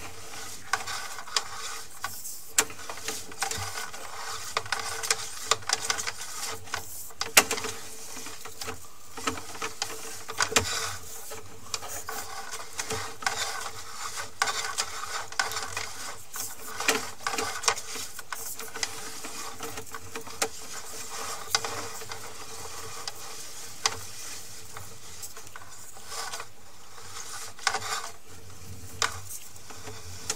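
Sewer inspection camera's push cable being fed down the line: irregular clicks, rattles and scraping rubs over a steady faint hum.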